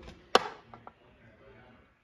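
One sharp click about a third of a second in, followed by two faint ticks, from handling the coin and the microscope.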